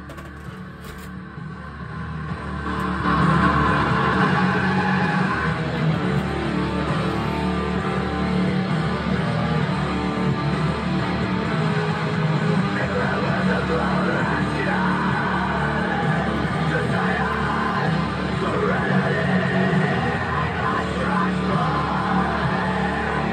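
Down-tuned modern death metal track from the four-way split playing, fading in over the first three seconds and then running at full level.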